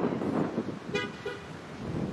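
Car horns giving a couple of short toots about halfway through, over a steady background rush.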